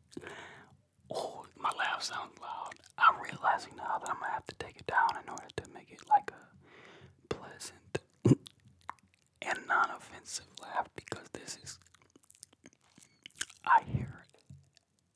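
A man whispering very close to a microphone in short phrases, with mouth clicks between them.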